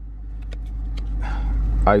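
Low, steady rumble of a car heard from inside its cabin, slowly growing louder, with a few light clicks; a voice starts near the end.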